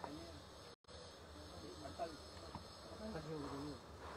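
Faint, distant voices talking in the shop, with a steady low hum and hiss underneath. The sound drops out completely for a moment just under a second in.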